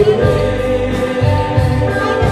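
A band playing live, with voices singing held notes over keyboards and a steady bass beat.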